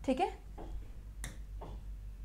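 A single sharp tap on an interactive touchscreen whiteboard about halfway through, with fainter small taps and rustles around it.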